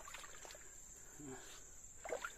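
Faint, steady, high-pitched insect drone, with a brief soft voice a little past halfway.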